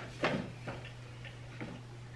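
Soft ticks and clicks at roughly two a second, over a steady low hum.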